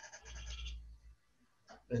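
A man's voice making a short, drawn-out, even-pitched hesitation sound over a video call, lasting under a second. It is followed by a pause and speech starting again near the end.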